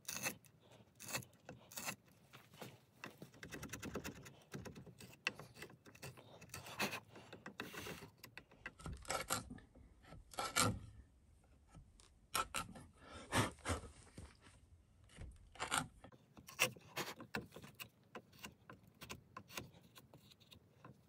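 Hand tools scraping and filing wood in short, irregular strokes with brief pauses, including a longer run of continuous scraping about three seconds in.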